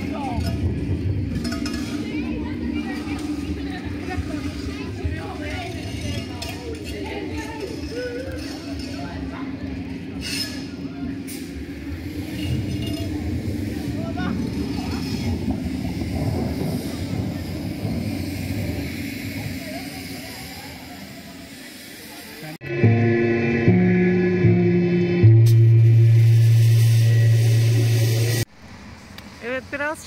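Indistinct voices and background noise from a gathering. About 23 s in, loud music of held, steady low tones starts suddenly, lasts about six seconds, and cuts off abruptly.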